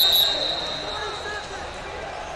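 The end of a referee's pea whistle, a shrill warbling blast that cuts off a moment in, signalling a stop in the wrestling. After it, the murmur of a large hall with scattered distant voices.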